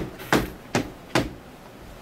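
Knocking on a door: four sharp knocks, evenly spaced a little under half a second apart.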